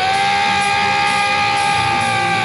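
A live punk rock band on stage: one long electric-guitar note, slid up into and then held steadily, ringing over the band's stage sound before the song kicks in.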